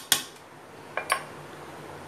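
A small steel cup clinks against a ceramic mixing bowl while powder is tipped out. One sharp click comes just after the start and two quick ones about a second in.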